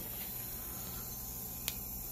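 Faint, steady insect chorus from a Peruvian rainforest recording played over a speaker, with a low steady hum beneath it and a single sharp click about one and a half seconds in.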